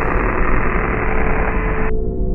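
Static noise effect: a steady hiss with a low hum under it, cutting off suddenly just before the end.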